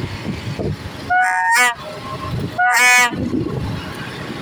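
Two short, loud blasts on a plastic 'baja' toy trumpet, about a second in and again near three seconds, each a high buzzing tone lasting about half a second. Under them is the low running of a motorcycle and the traffic around it.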